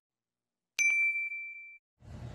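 Subscribe-and-like animation sound effect: a single bell-like ding a little under a second in, ringing on one high tone and fading over about a second, with a few light clicks at its start.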